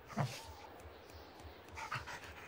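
A cartoon dog's short bark about a fifth of a second in, with a fainter call near the end, from the animated show's soundtrack.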